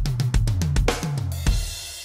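Electronic drum kit playing a quick linear fill, right hand, left hand, kick pedal in turn, around the toms and bass drum. It ends on a crash cymbal hit about one and a half seconds in that rings out and fades.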